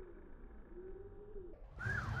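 A bird cooing: low, single-pitched coos, each about half a second long, repeating about once a second. Near the end a louder rush of noise comes in.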